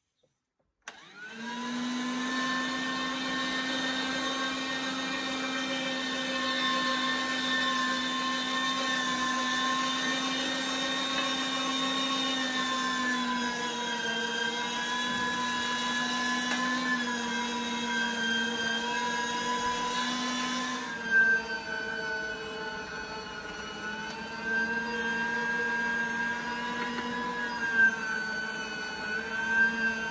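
Electric meat grinder switching on about a second in and then running steadily as chunks of lamb and fat are fed through to make mince: a motor whine whose pitch sags slightly under the load, with a few sharp knocks in the second half.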